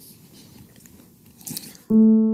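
An elderly man quietly stifling sobs: faint, broken breaths and small mouth sounds, a little louder about a second and a half in. A sustained piano chord begins just at the end.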